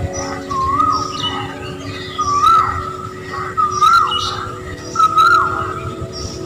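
Bird calls: a clear whistle that rises then drops sharply, repeated four times about a second and a half apart, with higher short chirps between, over faint steady background music.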